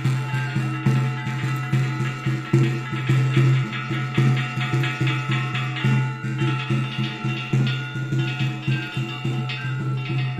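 Traditional folk music: sustained piping tones over a low steady drone, with a drum beaten in a quick, steady rhythm.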